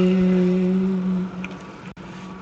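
Liturgical chant: voices sustaining one long held note, which fades away just over a second in, leaving a brief lull.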